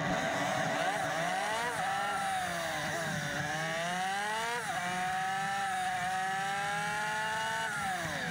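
Yamaha TW125's single-cylinder four-stroke engine pulling the bike along, heard from onboard: its pitch climbs, dips briefly, climbs again and drops sharply about halfway through, then rises slowly and falls away as the throttle closes near the end.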